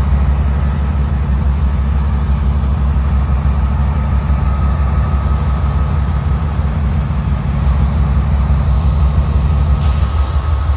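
Union Pacific GE diesel-electric locomotive's engine running with a loud, steady low rumble. A short burst of air hiss comes right at the end.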